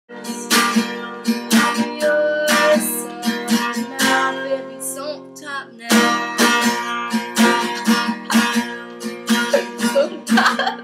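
Steel-string acoustic guitar strummed in a steady rhythm of chords, with a short break a little past halfway before the strumming picks up again.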